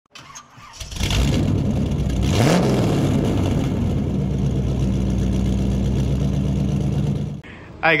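An engine catches about a second in, revs up once, then idles steadily until it cuts off suddenly near the end.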